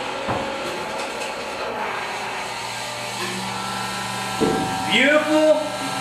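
GPI electric fuel transfer pump running with a steady motor hum as it pumps biodiesel through a hose and nozzle into a steel drum.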